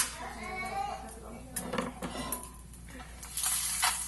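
A frying pan and utensils being handled: a sharp knock right at the start, a few clinks, then a burst of scraping noise near the end as the pan holding the fried egg is lifted off the stove.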